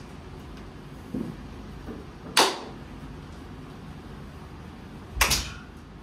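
Two loud, sharp smacks of hands on bare skin from sumo wrestlers going through the pre-bout ritual, the first about two and a half seconds in and the second, heavier one near the end, with a softer thump about a second in.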